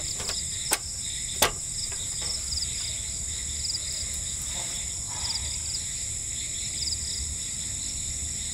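Steady high-pitched chorus of insects, with short pulsed chirps repeating over it. Two sharp clicks in the first second and a half as folding camp table pieces are fitted together.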